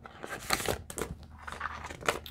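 Canadian polymer banknotes and a plastic binder pouch crinkling and rustling as a handful of bills is pulled out and handled, in a quick irregular run of small crackles.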